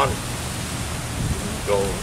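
Steady outdoor background noise, an even hiss with a low rumble beneath it, in a gap between words; a man's voice starts near the end.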